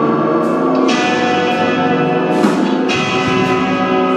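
A live psychedelic rock band plays sustained, ringing, bell-like chords on electric guitar and keyboard over drums. A fresh chord is struck about a second in and again about three seconds in.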